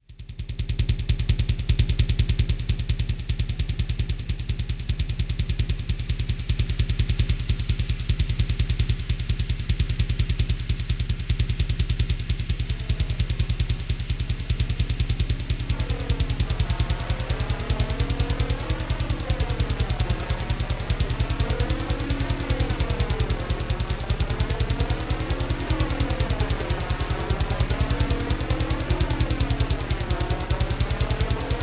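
Electronic industrial music that starts abruptly: a fast, steady Roland R-8 drum-machine beat over a heavy bass pulse. About halfway through, a sound that sweeps up and down in pitch over and over joins the beat.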